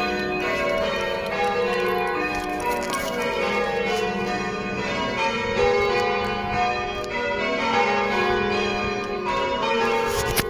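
Church bells being rung full-circle in changes from the tower: several tuned bells struck one after another in quick succession, their notes overlapping in a steady, unbroken peal.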